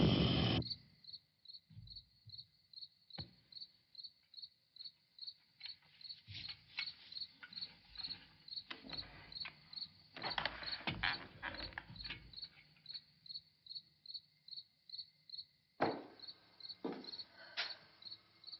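A cricket chirping in a steady, even rhythm of about two and a half chirps a second. A few soft knocks and shuffles come and go, clustered around the middle and again near the end.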